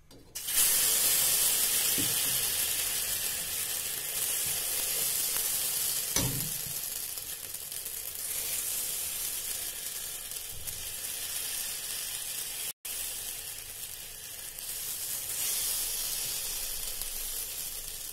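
Chila batter sizzling on a hot, oiled ordinary tawa. The hiss starts suddenly about half a second in as the ladleful lands and slowly fades, with a couple of soft knocks from the ladle spreading it.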